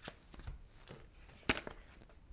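Tarot cards handled on a tabletop: a few soft taps and clicks of cards against each other and the table, with one sharper click about one and a half seconds in.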